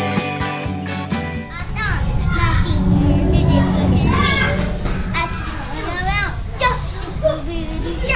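Background music with guitar for about the first second and a half, then a cut to a young girl's high voice calling out in short bursts over a steady low background rumble.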